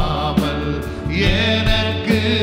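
Male voices singing a Tamil worship song into microphones, holding long gliding notes over live band accompaniment with a steady low bass.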